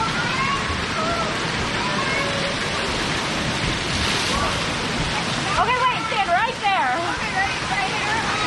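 Steady rush of falling and spraying water in a water-park splash pool, with children's voices throughout and a burst of high, excited shrieks about six seconds in.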